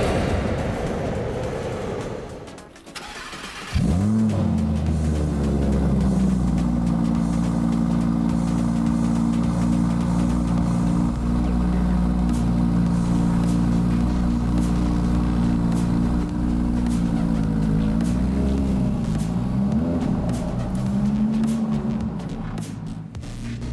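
Audi R8 Spyder's V10 engine starting about four seconds in with a quick flare, then idling steadily, with two small rises and falls in pitch near the end.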